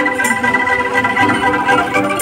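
Kentongan street ensemble music: bamboo angklung shaken to hold steady sustained chords, with sharp percussion hits over them.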